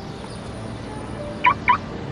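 Two quick, high electronic chirps about a quarter second apart from a car's remote-unlock alarm, over steady street traffic noise.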